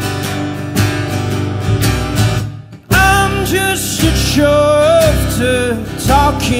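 Live acoustic folk-rock: strummed acoustic guitar with upright double bass. About two and a half seconds in, the music stops briefly, then comes back in with a loud male vocal line sung over it.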